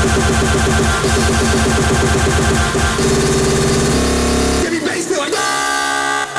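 Hardcore electronic music played loud in a large hall: rapid-fire distorted kick drums and bass. The pattern changes about three seconds in and breaks off near the end for a brief vocal sample.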